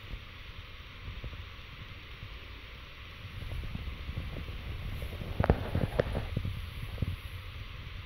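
Soft rustling as a rabbit noses and pushes a banana peel about on a rug, with a few light clicks a little past halfway, over a low steady rumble.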